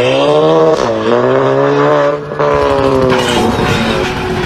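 A motor vehicle's engine revving hard, its pitch climbing and then holding high, with a brief drop about two seconds in.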